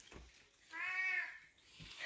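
A cat meowing once, a single drawn-out call that rises and falls in pitch, starting a little before the middle.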